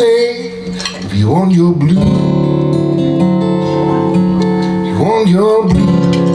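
Live solo acoustic blues: a man singing over his own strummed acoustic guitar, his voice sliding into notes about a second in and again near the end, with long held notes in between.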